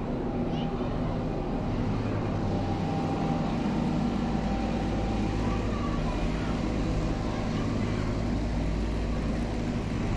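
Large box truck's diesel engine running as it moves slowly through an intersection close by: a steady low engine drone that grows stronger about three seconds in.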